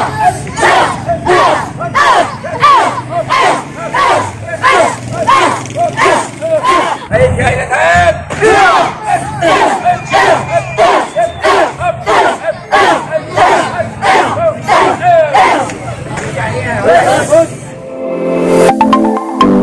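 A group of karate students shouting together in unison with each punch, a steady drill rhythm of about two shouts a second.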